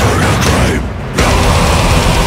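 Symphonic death metal song with dense, loud full-band playing. Shortly before the middle the band stops for a split second, leaving only a low rumble, then comes straight back in.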